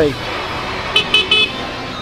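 Steady wind and road noise from a moving motorcycle, with three quick, high-pitched vehicle horn toots about a second in.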